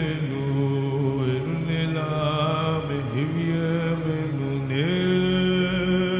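A man's voice singing a slow, chant-like worship melody in long held notes, moving to a new pitch every second or two.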